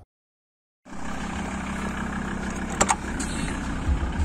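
A van's engine running steadily, heard from inside the cabin. It starts abruptly about a second in after dead silence, with a short click near the three-second mark.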